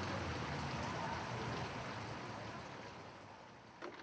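Steady background noise like running water or wind, fading out gradually, with a single click near the end.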